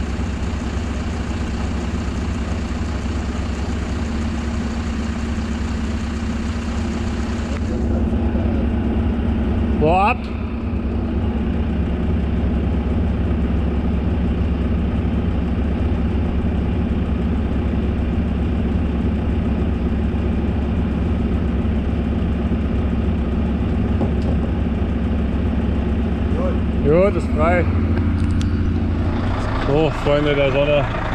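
Heavy diesel engine idling steadily, with a slight change in its note about four and eight seconds in. A voice gives a brief rising call about ten seconds in and again near the end.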